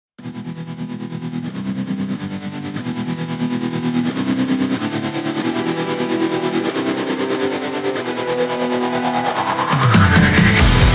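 Hard rock song intro: an echo- and distortion-treated electric guitar line that starts almost at once, pulses quickly and grows steadily louder. Just before the end the full band with drums comes in, together with a rising pitch glide.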